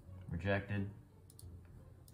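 A short wordless vocal sound from a young man, in two quick parts, followed about a second later by faint computer mouse clicks.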